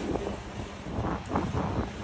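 Low wind rumble on the microphone, with faint scraping and rustling a little past a second in as a long table panel is slid out of a trailer's exterior storage compartment.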